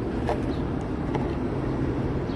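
Steady low rumble of road traffic, with a couple of faint clicks.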